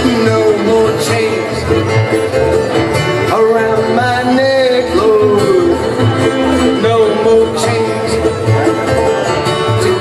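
Live bluegrass band playing an up-tempo instrumental passage: fiddle, banjo, mandolin and acoustic guitar over a steady upright bass pulse.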